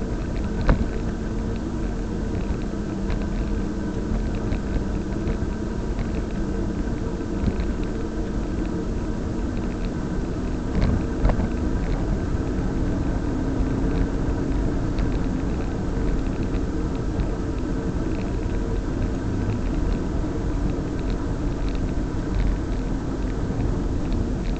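Steady road noise from a vehicle-mounted camera moving along an asphalt road: tyre rumble and wind, with a faint droning hum that wavers in pitch. A couple of brief knocks stand out, the loudest about eleven seconds in.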